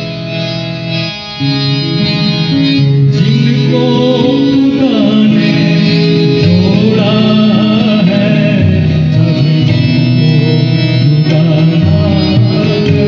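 Live song performed over a PA: a harmonium holds sustained chords with a hand drum, and a man's singing voice comes in about four seconds in.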